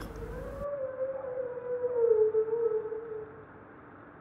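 Male bearded seal singing underwater: one long, siren-like call that drifts slightly lower in pitch and fades out near the end. It is a courtship vocalisation, the sign that the male has reached sexual maturity and is advertising to females.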